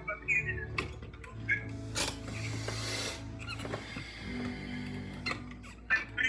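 Electronic keyboard sounding sustained low notes, with a bright hissing burst lasting about a second, two seconds in, and a few sharp clicks.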